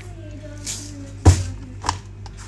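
A metal spoon knocking against an enamelled cast-iron pot: one sharp loud knock a little past the middle, then a lighter ringing clink just before the end.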